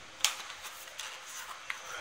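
Cardboard smartphone box being handled: a sharp tap about a quarter of a second in as the inner box comes out of its printed sleeve, then soft rubbing of cardboard with a couple of faint clicks.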